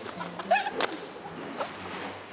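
Short bursts of women's laughter over low background noise, with a single sharp crack a little under a second in.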